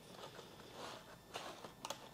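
Faint rustling of flower stems and foliage as a catkin branch is worked into the arrangement, with two small clicks near the end.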